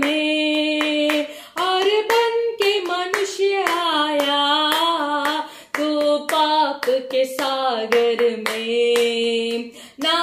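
A woman singing a worship song, holding long notes that slide between pitches, while clapping her hands in time.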